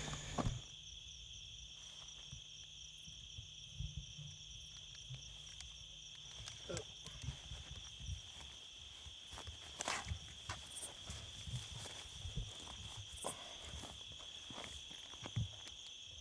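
Footsteps moving through brush, in irregular scattered steps, over a steady high-pitched chirring of insects.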